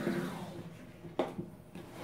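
Handling sounds of a chipboard mini album with metal binder rings being lifted out of a cardboard box and set down on a table: a soft rustle, then a short sharp knock about a second in as it touches down.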